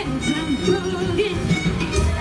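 Live swing big band playing, with violins, saxophones and a rhythm section, and a woman singing over the band.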